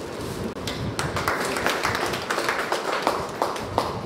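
Scattered hand clapping from a small group, starting about a second in and stopping near the end.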